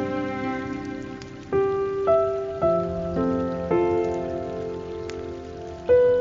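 Slow, calm guitar music: single plucked notes ringing out one after another, a new note about every half second for much of the time, over a steady hiss of running water.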